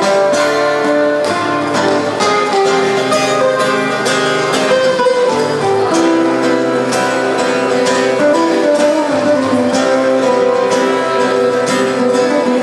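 Acoustic guitar strummed in a steady rhythm, an instrumental passage with chords ringing and no singing.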